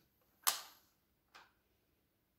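Rotary range selector on an analogue low-ohm meter clicking as it is turned to the 3 ohm scale: one sharp click about half a second in, then a fainter click nearly a second later.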